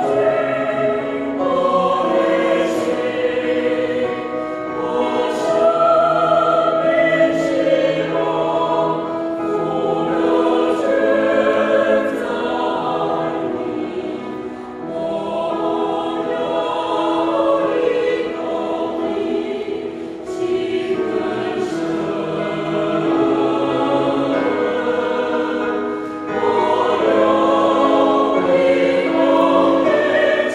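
A mixed choir of men's and women's voices singing a Chinese hymn together, in long sustained phrases with brief breaks between them.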